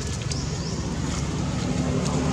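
Wind rumbling steadily on the microphone, with a faint short high chirp just before the middle.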